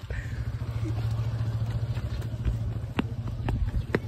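Steady low rumble of road traffic, with wind buffeting the phone's microphone and a couple of sharp clicks near the end.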